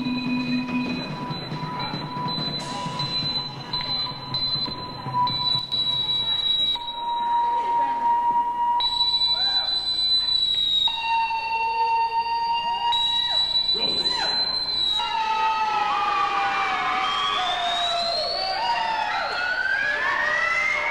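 Electronic keyboard tones in an experimental live set: held high, steady tones that step in pitch, over a low rumble for the first few seconds. From about three-quarters of the way through, several tones sweep up and down like sirens.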